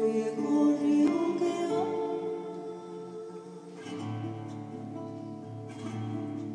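Nylon-string classical guitar playing a slow introduction to an Argentine folk song, with a woman's voice holding long wordless notes over it. The guitar's low notes come in more strongly about two-thirds of the way through.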